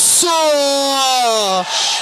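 A man's voice drawing out the end of the goal call 'golaço': a brief hiss, then one long held 'o' that slowly falls in pitch.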